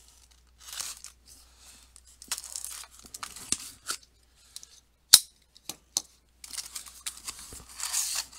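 A cardboard shipping case being opened by hand: tape tearing and cardboard scraping in irregular bursts, with one sharp snap about five seconds in.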